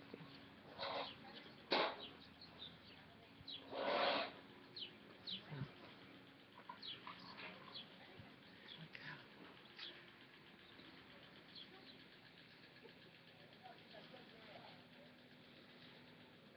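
Birds calling: scattered short falling chirps and whistles, with a few louder harsh calls in the first four seconds, thinning out in the second half.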